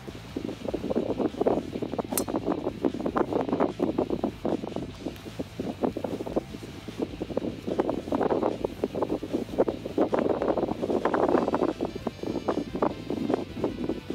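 Wind buffeting the camera's microphone in uneven gusts, starting abruptly. A single sharp click comes about two seconds in.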